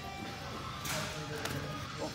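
Background music, with a brief soft noise of movement about a second in.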